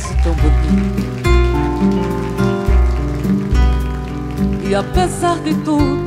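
Live acoustic band music with no vocals: steady bass notes and held chords under a wavering melody line near the end.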